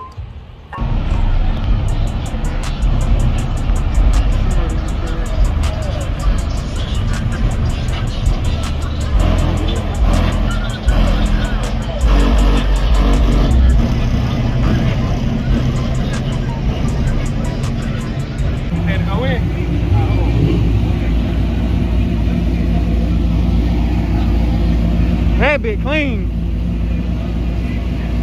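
A loud car engine running at a car meet, its low rumble steadier in the second half, with music and people's voices mixed in.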